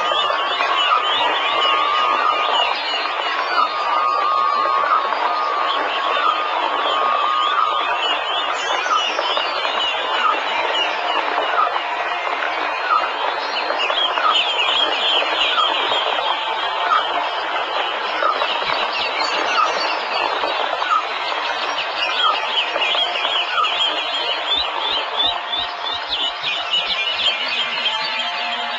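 Dense chorus of many birds chirping and trilling over one another, a steady wash of short repeated calls.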